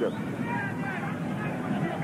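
Steady stadium crowd noise under a television football broadcast, with faint voices in it.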